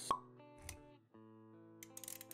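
Background music under animated-intro sound effects: a sharp pop just after the start, a low thud a moment later, then a few quick clicks near the end.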